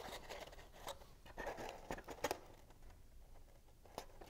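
Faint rustling and a few light ticks of cardstock being handled and pressed together while a freshly glued tab is held in place, mostly in the first couple of seconds.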